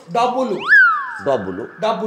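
Conversation with a short, loud, high-pitched cat-like meow about a third of the way in, rising sharply and then sliding down, with a thin high tone lingering for about a second after it.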